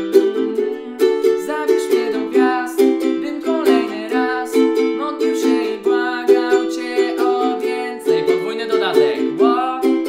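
Ukulele strummed in a steady down-down-up-up-down-up pattern through the chords C, Am, Em and D, with a man's voice singing along.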